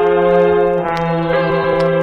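Opening of a hip-hop track: sustained brass chords, held notes that change chord about a second in, with a few sharp clicks over them.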